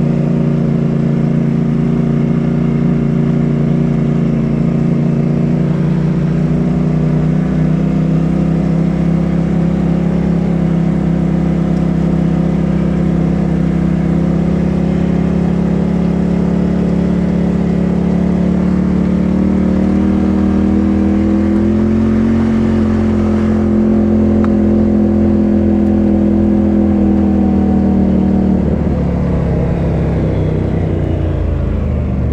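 Polaris RZR side-by-side's engine running at a steady cruise under way. Its pitch rises slightly about two-thirds of the way through, then the engine note falls away near the end as the throttle eases.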